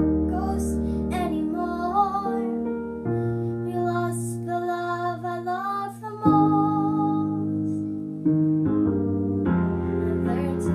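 A young girl singing a slow ballad over a piano accompaniment, the piano chords changing every couple of seconds beneath her voice.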